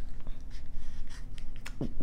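Faint handling noise, soft rustling and a few light clicks, over a low steady hum.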